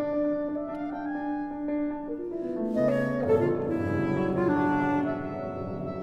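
Contemporary chamber music for clarinet, cello and piano. A long held note gives way, about two seconds in, to lines stepping downward into a lower, fuller texture, with struck piano notes near the middle.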